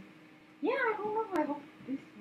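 A single drawn-out vocal call, about a second long, begins just over half a second in; it rises and then falls in pitch. A sharp click sounds during it.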